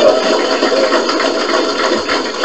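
An audience laughing together, a dense, steady crowd noise.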